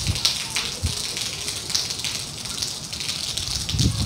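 Cyclone rain and wind: a steady hiss with scattered crackling of drops on the roofs.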